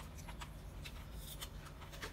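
Faint small clicks and rustles of handling over a low steady hum.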